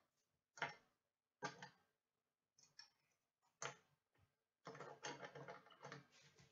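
Faint, scattered taps and clicks of trading cards and plastic card holders being handled and set down on a table, about five separate taps, then a quick run of smaller clicks near the end.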